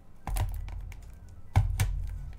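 A few taps and knocks from a sturdy cardboard trading-card booster box being handled, with the sharpest knocks about a second and a half in.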